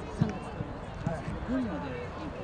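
Thuds of a football: one sharp, loud thud just after the start, then a couple of lighter knocks, over the chatter of spectators' voices.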